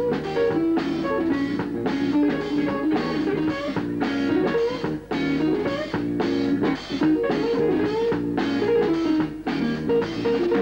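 Jazz band playing live, an electric guitar to the fore with a busy line of quickly changing notes over a drum kit.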